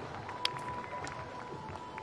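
Low open-air ambience of a cricket ground with no play under way, carrying a faint steady high tone from about half a second in and one short click.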